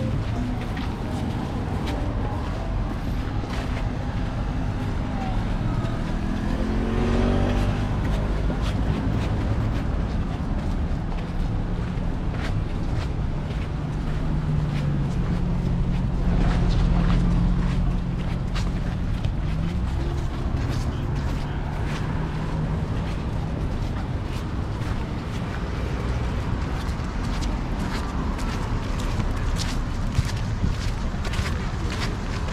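Road traffic passing close by: car engines and tyres, with one vehicle accelerating in a rising engine note about seven seconds in and a steady engine hum through the middle.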